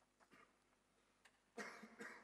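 Near silence with a few faint clicks, then a single cough near the end that echoes in the large church hall.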